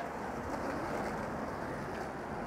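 Outdoor background noise: a steady, even hiss with no distinct sounds standing out.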